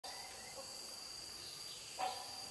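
Rainforest insects droning steadily at two high pitches, with faint, distant hornbill calls lower down early on.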